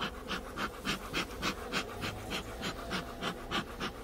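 Bee smoker's bellows being pumped, puffing smoke in short, even hisses about three to four times a second, to calm the bees over an open hive.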